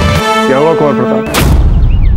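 Dramatic TV-serial background score: a wavering, gliding melody with the bass dropped out, then one loud booming hit about one and a half seconds in, followed by a low rumble.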